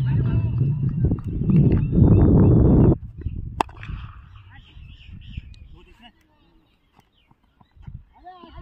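Loud wind rumble on the microphone with faint voices for about three seconds, cutting off suddenly. About three and a half seconds in comes one sharp knock, followed by faint distant calls that fade to near silence.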